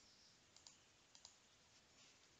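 Near silence with faint computer clicks: two quick pairs of clicks, the second pair about half a second after the first.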